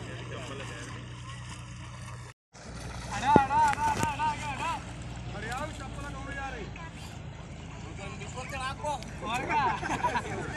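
A steady low motor hum for about two seconds, cut off abruptly. Then voices shout and call out loudly in long wavering calls, most strongly a little after three seconds in and again near the end.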